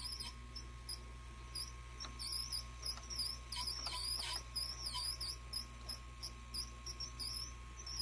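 Rapid, irregular high-pitched squeaking from the tape transport of a 1984 JC Penney 5053 VHS VCR as it plays a tape, over a steady low hum. The owner puts the machine's trouble down to worn belts and idlers.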